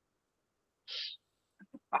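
Near silence, then a short intake of breath from a man about to speak, about a second in. A few faint mouth clicks follow just before he starts talking.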